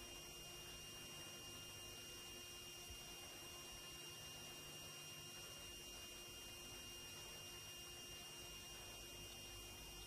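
Near silence: a faint steady hum and hiss.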